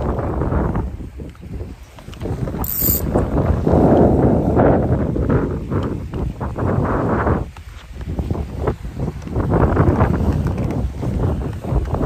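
Wind buffeting the phone's microphone in strong gusts, rising and falling with brief lulls, with a short high-pitched blip about three seconds in.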